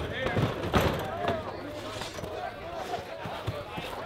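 Several people talking at once, less close than the main speakers, with one sharp knock a little under a second in.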